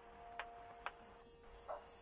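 Insects trilling on one steady high note, with light footsteps clicking on brick paving about twice a second. Faint soft music underneath.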